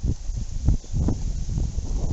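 Wind buffeting the camera's microphone in uneven low rumbling gusts.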